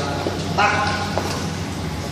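A man's voice says a single word over a steady low machinery hum.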